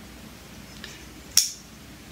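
A small folding pocket knife being handled and worked open by hand: one sharp click about one and a half seconds in, with a fainter one just before it.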